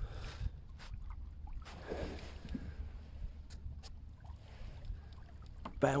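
Water moving gently along the wooden hull of a Mirror dinghy sailing slowly in near-calm water, under a steady low rumble, with a few faint knocks.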